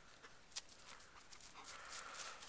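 Faint sounds of a dog close to the microphone: breathing and panting, with a thin whine starting near the end, among light clicks.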